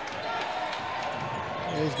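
Basketball being dribbled on a hardwood court amid the steady noise of an indoor arena. A man's commentary voice comes in near the end.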